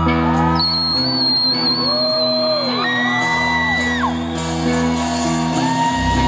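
Live rock band playing held, ringing chords with no vocal line, loud in a large hall, with whoops and shouts from the crowd rising and falling over the music.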